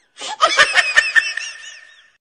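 A burst of human laughter: a quick run of 'ha' pulses that starts a moment in and trails off near the end.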